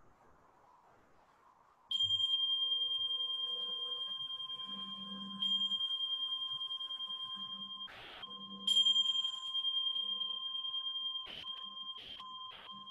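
Tingsha cymbals struck three times, each strike a high, ringing tone that wavers as it slowly fades. They are rung to close the final relaxation.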